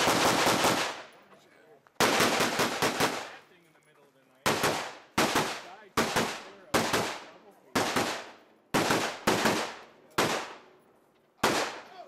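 Rifle shots fired during a timed stage run: a quick string of shots at the start, another quick string about two seconds in, then single shots every half second to a second. Each shot has a short echo off the range berms.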